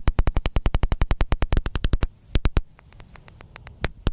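A cheap high-voltage spark module arcing against a pop-pop snapper as a fast, even crackle of electric snaps, about fourteen a second. It stops about two seconds in, leaving a few single snaps after. The snapper does not go off, which is put down to it being conductive.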